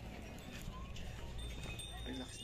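Hooves of pack animals clip-clopping on stone steps, with a low wind rumble on the microphone and voices in the background.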